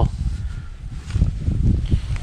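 An uneven low rumble of wind buffeting the microphone outdoors.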